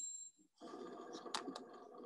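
Faint room tone with two short, sharp clicks about a second apart, after a thin high ringing tone fades out at the very start.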